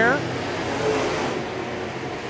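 A pack of dirt late model race cars running laps on the dirt oval, their V8 engines making a steady drone of engine noise. A voice trails off just at the start.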